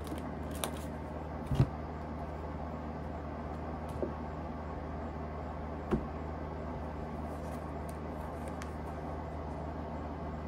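A deck of round oracle cards handled and set down on a tabletop: a few light taps and knocks, the loudest a dull thump about a second and a half in, over a steady low hum.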